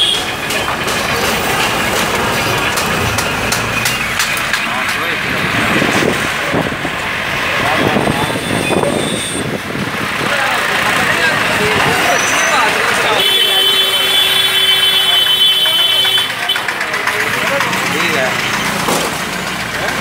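Busy street noise: people's voices talking over running vehicle engines and motorbikes. A steady tone is held for about three seconds a little past the middle.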